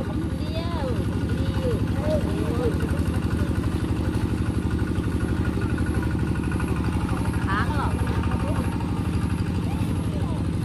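A small engine running steadily with an even, rapid pulse.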